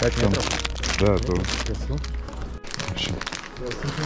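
A plastic bag crinkling and rustling as it is handled, under voices and music.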